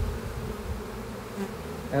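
Honeybees buzzing steadily around an opened hive and a lifted frame, with a brief low bump right at the start.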